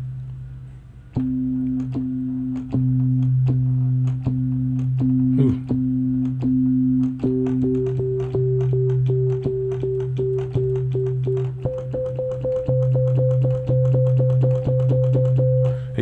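Synthesizer sine tones: a low C held as the fundamental while its harmonics are played over it as repeated notes, first the octave, then the G above it from about 7 seconds in, then the C two octaves up from about 12 seconds in. Each harmonic pulses in a quicker rhythm than the one before. It demonstrates the overtones of a single note as rhythms.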